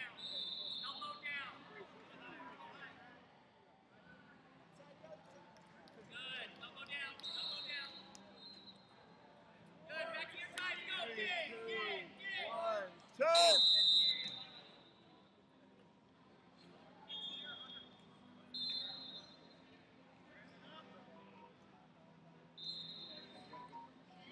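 Wrestling tournament hall sounds: coaches and spectators shouting, and several short high whistle tones. About 13 seconds in comes the loudest sound, a brief loud blast that marks the end of the period.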